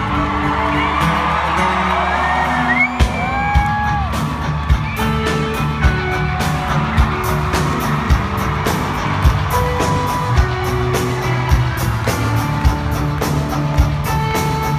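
Live rock-country band music heard from the audience at a concert, with a steady kick-drum beat coming in about three seconds in, roughly once a second. A few rising whoops from the crowd sound just before the beat starts.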